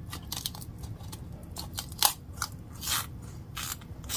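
Kitchen food-preparation noises: an irregular run of short, crisp crunching and snipping sounds, the sharpest about two seconds in, over a low steady hum.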